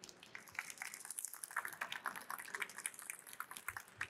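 Faint scattered applause from a small audience: many quick, irregular hand claps.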